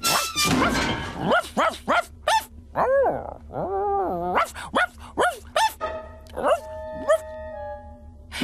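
A cartoon robot dog's voiced barks come in a quick run of short yelping barks, with one longer wavering call in the middle. Laughter is heard near the start, and music with held notes takes over near the end.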